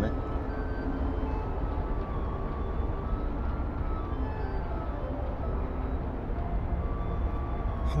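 Film soundtrack in a pause between lines: a steady low rumble of outdoor city background noise under faint held musical notes.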